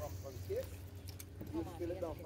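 A person's voice speaking a few brief syllables, with a steady low hum underneath.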